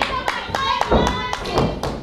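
Sharp claps and slaps from a wrestling crowd and ring, with a couple of dull thuds about half a second and a second in.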